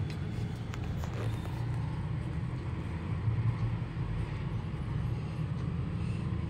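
Steady low background rumble, with a few faint soft ticks in the first second or so.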